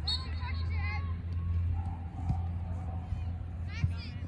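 Distant shouts and chatter of players and spectators at a soccer game, faint and scattered, over a steady low rumble. Two brief dull thuds come in the second half.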